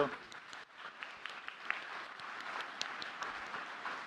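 Audience applauding: a dense, steady patter of many hands clapping that swells in about half a second in.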